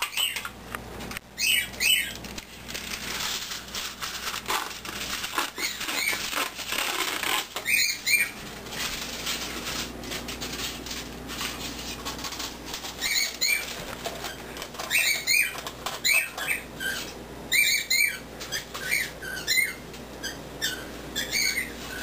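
Aluminium foil being pulled off the roll and crinkled for several seconds near the start, with pet birds giving short chirps on and off.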